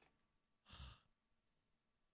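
Near silence, with one short, faint breath or sigh into a close microphone a little under a second in.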